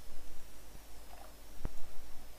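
A single sharp computer mouse click about one and a half seconds in, over a faint steady electrical hum.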